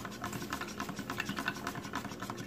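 A spoon stirring in a coffee mug: a fast, irregular run of light scraping clicks.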